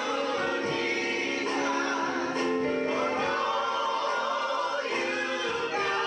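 Gospel choir of mixed men's and women's voices singing together, with long held notes.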